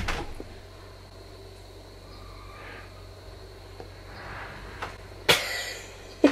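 Quiet room with a steady low hum. There is a knock at the very start as the handheld camera is set down, and a short sharp noise about five seconds in.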